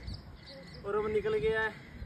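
A man's voice saying a few words about a second in, over quiet open-air background.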